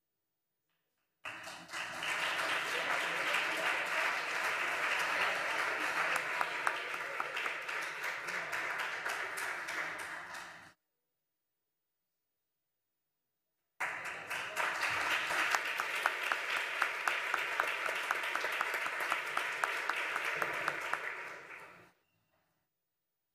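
Audience applauding in two stretches of about nine and eight seconds, each starting and cutting off abruptly, with dead silence between them.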